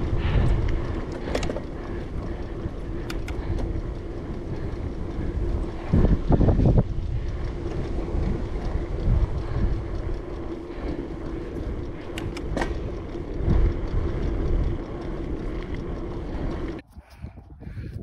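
Wind rushing over a handlebar-mounted action camera's microphone as a bicycle rolls downhill on a tarmac lane, with a low rumble and a steady hum beneath. The wind gusts louder about six seconds in, and near the end the sound cuts off suddenly to a quieter, different recording.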